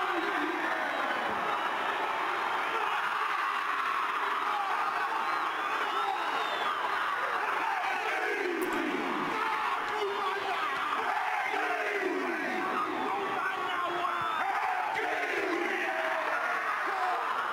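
A rugby league team performing the haka: many men chanting and shouting in unison over a cheering stadium crowd.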